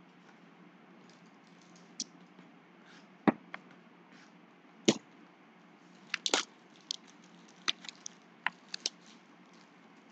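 Cardboard trading-card boxes being handled: a scattered series of short taps, knocks and crinkles. The two loudest come about three and five seconds in, followed by a quick cluster of clicks and several lighter ones.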